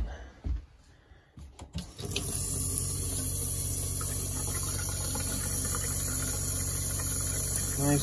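A few knocks, then about two seconds in the camper's kitchen faucet opens and runs steadily into a stainless steel sink, with the RV water pump humming underneath. The pump is pushing RV antifreeze through the water lines to winterize the plumbing, and the stream turns pink near the end.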